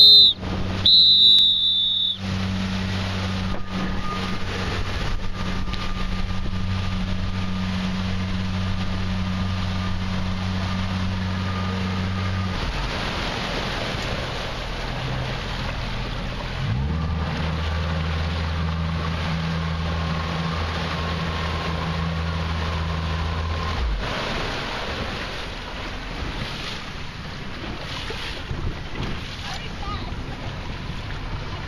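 Two short, shrill whistle blasts, then a motorboat engine humming steadily under wind and rushing water. The engine drops away a little before halfway, comes back a few seconds later and stops about four-fifths of the way through, leaving wind and water.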